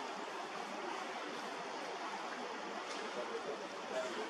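Steady rush of choppy sea water, an even hiss of moving water and wind with no distinct events.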